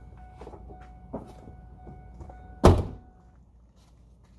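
A pickup truck door shut with one heavy thunk about two and a half seconds in, after a few light knocks; a faint steady tone in the background stops soon after.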